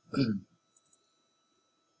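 A brief voiced murmur from a man, then two faint computer-mouse clicks about a second in.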